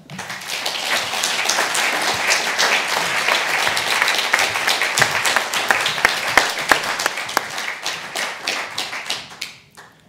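Audience applauding: dense clapping starts at once, holds steady, and dies away near the end.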